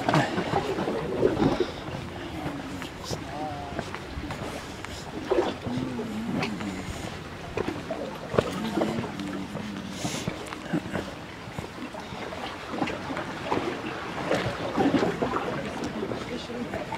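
Indistinct voices with no clear words, over a steady outdoor background of wind, with scattered light knocks.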